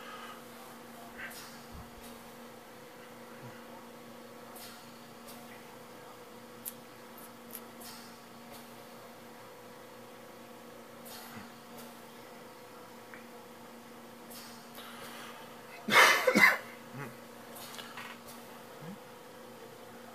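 Dell Inspiron 531 desktop computer running with a steady, quiet hum, with a few faint clicks. A brief, much louder noise sounds about sixteen seconds in.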